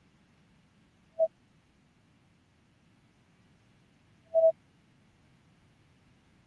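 Two short mid-pitched beeps over near silence: a brief one about a second in, and a slightly longer one about three seconds later.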